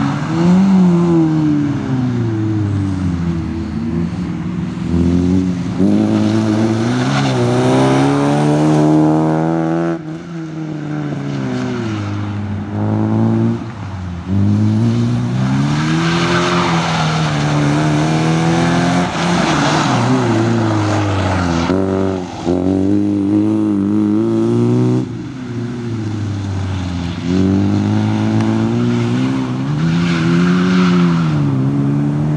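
Opel Corsa B race car's four-cylinder engine driven hard. Its pitch climbs through the revs again and again, with sharp drops at gear changes and when lifting off for corners. A hiss of tyres on the wet surface comes in the middle.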